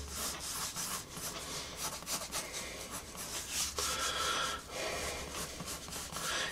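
Prismacolor Col-Erase blue pencil scratching across Bristol board in a run of short, quick drawing strokes.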